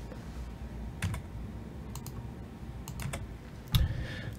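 A handful of separate computer keyboard keystrokes, roughly one a second, over a low steady room hum.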